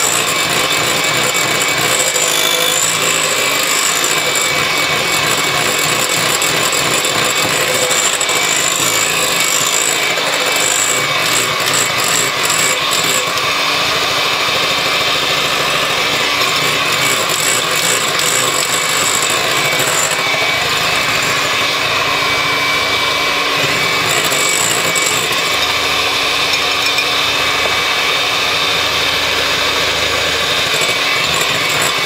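Handheld electric mixer running steadily, its beaters whipping egg whites into a stiff foam in a glass bowl while sugar is beaten in a spoonful at a time.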